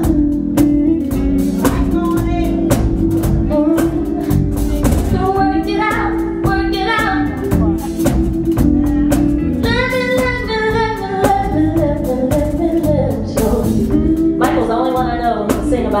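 A band playing: a steady drum-kit beat with guitar and a held bass note, and a voice singing in phrases over it, coming in about four seconds in, again around ten seconds and near the end.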